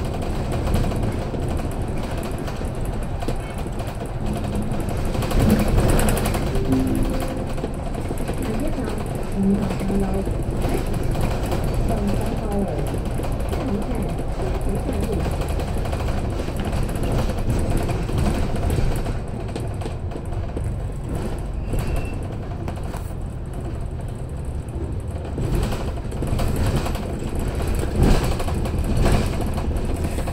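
Double-decker bus running along a city road, heard inside the upper deck: a steady rumble of engine, tyres and cabin rattle.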